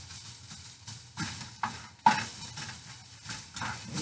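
Onions sautéing in oil in a frying pan, sizzling, while a spatula stirs and scrapes them around the pan with several sharp scrapes and knocks, the loudest about two seconds in.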